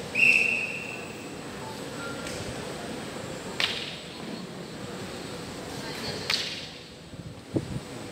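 A walking cane swung through the air in a tai chi cane form: a short high squeak right at the start, then sharp swishes about three and a half and six seconds in, and a few soft thuds near the end.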